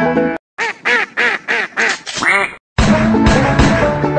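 Five quick duck quacks, evenly spaced, followed by a short rising glide, in a break in bluegrass banjo music. The banjo music stops about half a second in and starts again near three seconds in.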